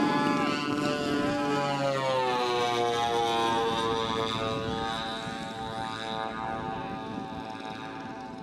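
Twin engines of a large radio-controlled scale OV-1 Mohawk model running as it rolls along the runway past and away. A steady droning tone whose pitch drops a couple of seconds in and then holds, while the sound slowly fades.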